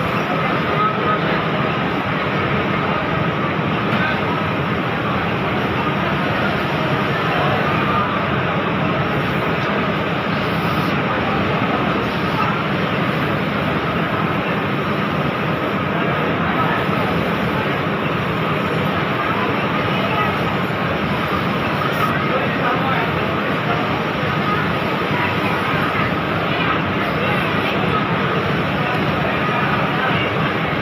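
Steady, even machinery noise of a garment factory floor, with a faint babble of distant voices mixed in.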